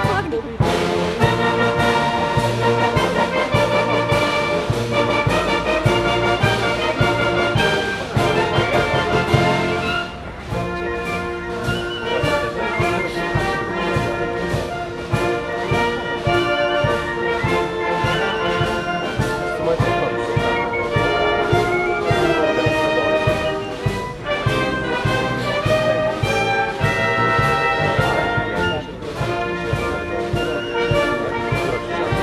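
Brass-and-woodwind wind band playing a march, with full sustained chords over a steady drum beat; the music eases to a slightly quieter stretch about ten seconds in.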